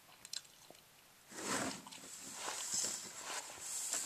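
Faint handling noise from a camera being picked up and moved: a few small clicks, then rustling and scraping from about a second in.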